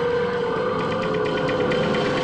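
Suspenseful background score of sustained tones, with a quick, regular ticking pulse coming in just under a second in.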